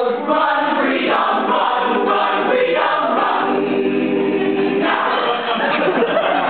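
A stage cast singing a gospel-style number together in chorus, live in a theatre, heard from the audience seats.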